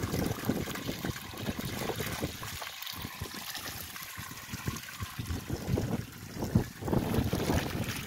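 Groundwater welling up out of a borewell casing, spilling over its rim and splashing steadily onto the ground, with wind gusting on the microphone.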